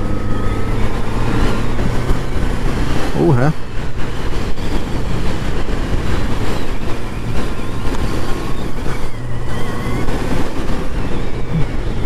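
Yamaha XJ6's 600 cc inline-four engine humming at steady cruising revs while the motorcycle is ridden, under a steady rush of wind and road noise on the onboard microphone.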